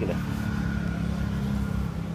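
A steady low motor drone with a faint thin whine above it, unchanging throughout.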